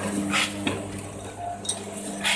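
240A automatic sugar bag packing machine running, its rotary measuring-cup filler turning and dropping sugar into the bags: a steady motor hum with a few brief metallic clicks.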